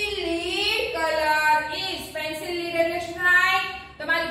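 A woman's high voice singing in a drawn-out, sing-song way, with long held notes that slide up and down in pitch and a short break about two seconds in.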